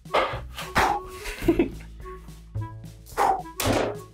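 Background music with several dull thuds of a small ball being bounced and thrown at a toy basketball hoop.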